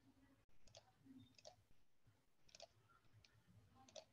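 Near silence with a few faint, scattered clicks from a computer being operated.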